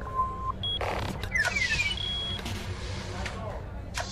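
Sci-fi sound effects: a few short electronic beeps and held tones, a brief whoosh about a second in, and a run of quick chirps, over a steady low background hum.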